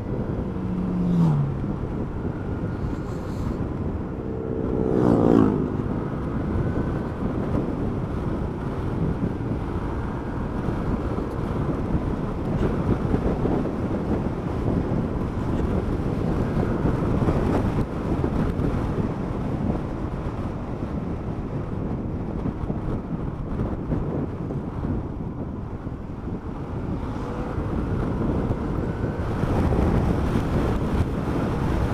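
Motorcycle engine running at road speed under steady wind and road noise on a helmet-mounted camera. The engine note falls twice, briefly about a second in and more sharply about five seconds in.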